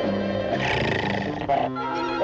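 Cartoon bloodhound snarling with a rough growl over orchestral music; the growl is strongest from about half a second to a second and a half in.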